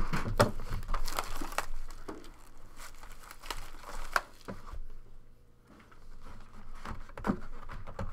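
Sport Kings trading-card boxes being handled on a tabletop: scattered taps, knocks and rustling as a box is picked up, slid and set down, with a brief lull about five seconds in.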